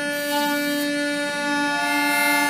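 Harmonica played by a child: a chord of several notes held steadily on one long breath, with a higher note joining about half a second in.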